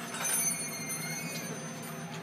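Steady high-pitched mechanical whine over a low hum.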